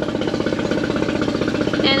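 Mercury 15 hp EFI four-stroke outboard, a two-cylinder motor, running steadily with a fast, even beat.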